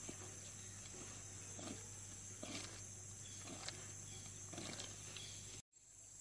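Faint soft rustling and squishing as a hand mixes and squeezes grated coconut in a steel plate, about five short bursts spread over the few seconds, over a steady low hum and high hiss. The sound cuts off abruptly near the end.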